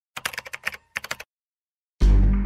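Typing sound effect: about a dozen quick keyboard-like clicks in two short bursts during the first second or so.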